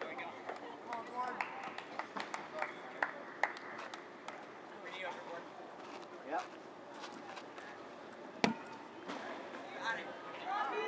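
Distant voices of players calling out across an open field, with scattered light clicks. About eight and a half seconds in comes one sharp thump: a rubber kickball being kicked.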